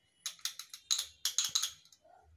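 Small plastic jar being handled and its lid twisted open: a quick run of scratchy clicks and crackles.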